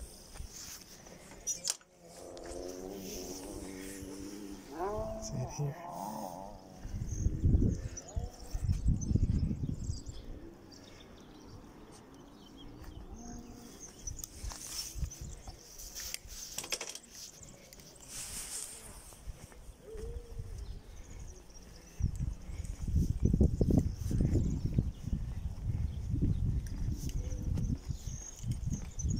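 Gusts of wind rumbling on the microphone, loudest about eight seconds in and over the last six seconds. A person's voice is heard faintly, away from the microphone, a couple of seconds in.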